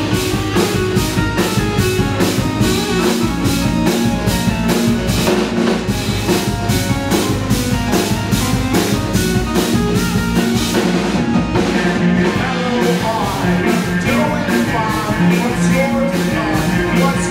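Rock band playing live: drum kit keeping a steady beat under bass guitar, electric guitar and an ASM Hydrasynth synthesizer.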